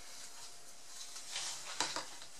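Clear plastic cup being picked up and handled with gloved hands: a faint rustle, then a single sharp plastic click near the end.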